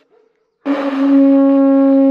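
Music: a single long, steady horn note comes in loud about half a second in, after a brief silence, and is held without wavering.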